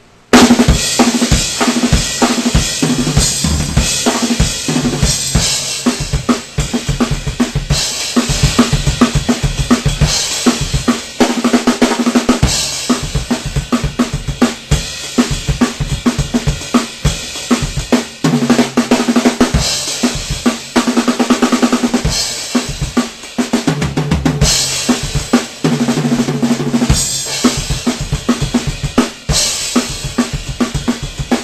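A rock drum kit played solo, with no other instruments: continuous busy fills and rolls across snare, toms and bass drum, with cymbal crashes. It starts suddenly at the very beginning, and there are recurring stretches of rolls around the toms.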